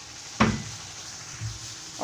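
Steel spoon stirring thick tomato sauce in a kadhai, with one sharp clink of spoon against the pan about half a second in, over a low steady background.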